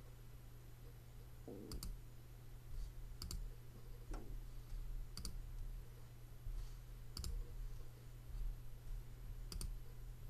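Computer mouse clicks, sharp and paired, five in all about every two seconds, over a steady low electrical hum.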